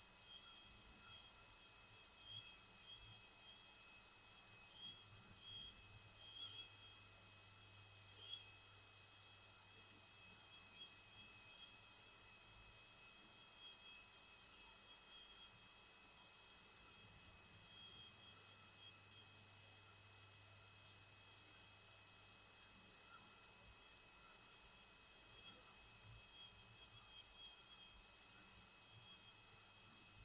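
High-speed dental handpiece with a diamond bur cutting an upper front tooth for a crown preparation: a thin, high-pitched whine that comes and goes in short spurts as the bur is touched to the tooth, quieter for a few seconds past the middle.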